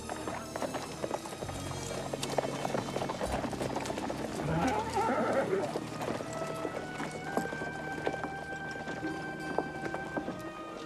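Horses' hooves clopping on dirt as a group of riders sets off at a run, loudest around the middle as they pass close. Under it runs an orchestral film score with long held notes.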